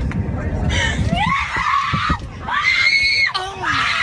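A distressed young woman screaming and wailing, her high cries rising and one held for nearly a second near the middle. Beneath them runs a low cabin drone of an airliner preparing for takeoff.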